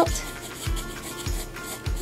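Graphite pencil scratching and rubbing across drawing paper in short strokes, over background music with a steady beat of about one thud every half-second or so.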